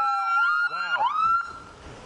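Police car sirens wailing, two at once with their pitches sweeping up and down past each other. They cut off about one and a half seconds in.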